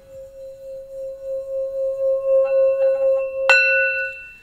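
Metal singing bowl ringing with one steady tone that swells and wavers in loudness. About three and a half seconds in it is struck once, adding brighter, higher ringing overtones.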